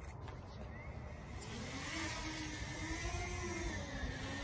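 Camera drone's motors and propellers spinning up for take-off about a second and a half in, settling into a steady hum that wavers slightly in pitch.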